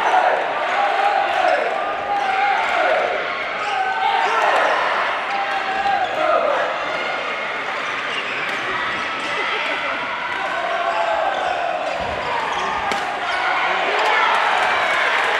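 Shouted voices echoing in a large sports hall, rising and falling in short calls, with scattered sharp clicks and smacks throughout.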